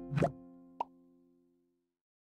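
Editing sound effects over the final music chord: a short rising pop a fraction of a second in and a sharp plop just under a second in, while the held chord fades out to silence.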